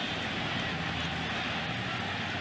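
Large ballpark crowd cheering a home run, a steady wash of many voices without any single event standing out.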